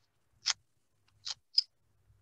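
Three short clicks: one about half a second in, then two close together near the end.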